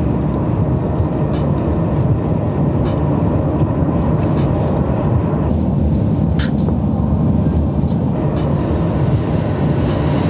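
Steady road and engine noise heard inside the cabin of a car moving at highway speed, a constant low rumble.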